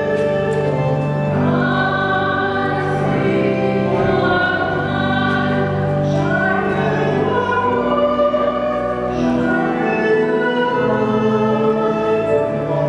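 Church music: voices singing a slow hymn in long held notes over sustained accompaniment.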